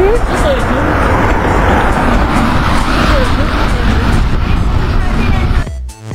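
Loud, steady street noise with a low rumble, a car running close by, and faint voices. Near the end it cuts off suddenly and music takes over.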